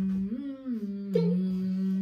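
A man humming one long held "mm", with a brief rise and fall in pitch about half a second in and a short break about a second in.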